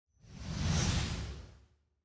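A whoosh sound effect over an animated intro, with a low rumble under a bright hiss. It swells up quickly, peaks just under a second in, and fades away by the end.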